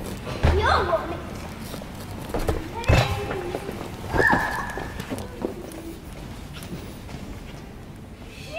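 Children's short shouts and squeals, one of them a held high squeal about four seconds in, with dull thuds about half a second and three seconds in from playing on soft-play equipment.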